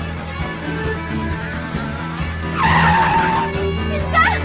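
Soundtrack music with a vehicle's tyres screeching for about a second, loudly, a little past halfway through.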